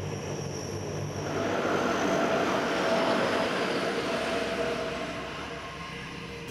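The four turboprop engines of a P-3 Orion patrol aircraft running on the airfield, a droning hum that grows louder over the first two seconds and then eases off.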